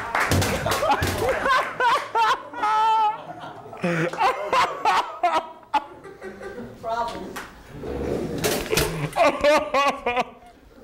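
Laughter and talk, crossed by several short sharp knocks as a metal pop-up toaster hits the floor and is stepped on.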